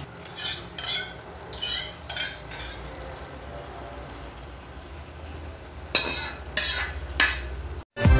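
A metal ladle clinking and scraping against a stainless steel pot of soup: a few clinks in the first couple of seconds and three more near the end. A steady low hum runs underneath.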